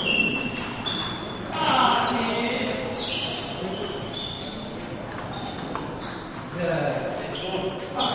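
Table tennis balls clicking irregularly off tables and bats, short high ticks with a brief ring, from several tables at once, over people talking.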